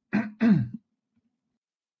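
A man clearing his throat: two short bursts in the first second, the second falling in pitch.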